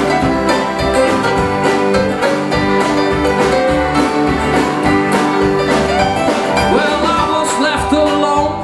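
Live folk band playing an instrumental break between verses: fiddle over strummed acoustic guitars, accordion and upright bass in a driving country rhythm.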